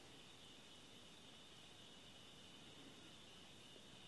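Near silence, with a faint, steady, high-pitched insect chorus.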